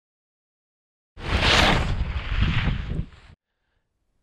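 Logo sound effect: a loud, deep, noisy whoosh that starts about a second in, lasts about two seconds and cuts off suddenly.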